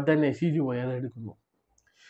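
A man speaking in Malayalam to camera. His voice cuts off abruptly about a second and a half in, leaving dead silence: an edit cut in the recording.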